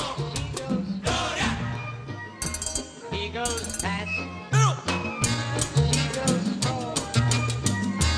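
Instrumental Latin mambo dance music with an even percussion pulse and a stepping bass line, and a brief swooping pitch about four and a half seconds in.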